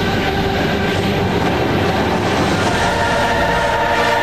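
Sound effects for a TV channel ident: a loud, steady wash of rushing noise with some held tones mixed in.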